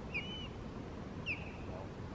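Two short, high bird chirps about a second apart, over the steady rush of a river.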